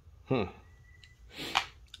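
A steel frame-lock folding knife being closed by hand: a brief scraping swish about one and a half seconds in, with faint clicks around it.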